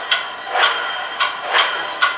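Drill press running a chamfering cutter against square steel tubing, with a steady high whine and sharp clicks about every half second as the cutter bites.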